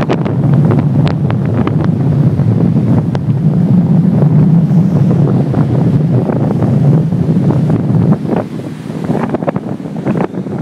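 Strong storm wind buffeting the microphone in a loud, steady rumble, with surf breaking on the shore underneath. The gusts ease and turn choppier about eight seconds in.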